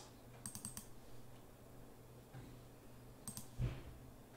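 Faint clicking of a computer mouse and keyboard: a quick run of clicks about half a second in and another short cluster a little after three seconds, followed by a soft low thump.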